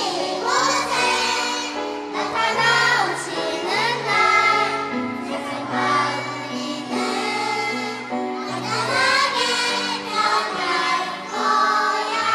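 Young children and adults singing a Korean worship song together, a child's voice leading on microphone, over instrumental accompaniment with held chords.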